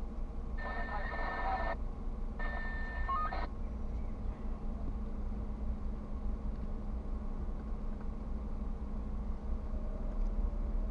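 An electronic ringing tone sounds twice, about a second each with a short gap, then stops. Under it runs the steady low rumble of a car idling in traffic, heard from inside the cabin.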